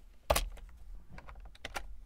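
Computer keyboard keystrokes: one loud key press about a third of a second in, then a quick run of lighter key clicks near the end.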